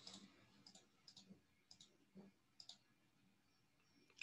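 Near silence with a scattered handful of faint, short clicks during the first three seconds.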